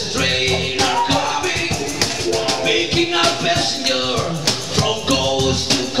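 Live acoustic band playing reggae, with a steady, even beat.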